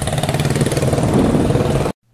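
Motor vehicle engine running steadily at low revs, cut off abruptly near the end.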